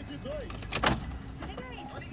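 Car idling, heard from inside the cabin as a steady low hum, with a single sharp click a little under a second in and a faint murmur of a voice.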